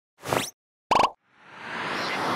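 Animated-logo intro sound effects: two short pitched pops, the first sliding up in pitch, then a whoosh that swells up from about halfway through.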